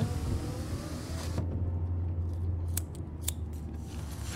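Low, steady rumble of a car interior while riding, with a few sharp clicks in the second half.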